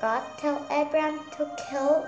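A girl's voice with a sing-song, gliding delivery, over soft background music.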